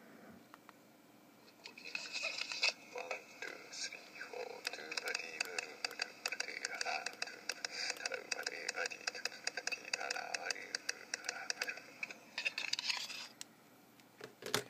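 Playback of a recorded tapping trial on a handheld voice recorder: a quick run of taps with a voice over it, starting about two seconds in and stopping shortly before the end.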